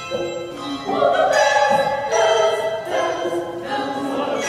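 A mixed choir singing with a handbell ensemble ringing, the voices swelling fuller and louder about a second in.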